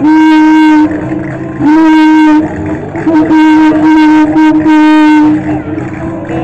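Very loud, horn-like tone held on one steady pitch, sounding in a series of blasts: a long one at the start, a second about two seconds in, then a longer run broken by short gaps that ends near the end, all overloading the microphone.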